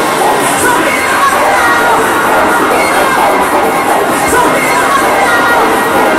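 A crowd cheering and shouting over loud club music, steady throughout with no breaks.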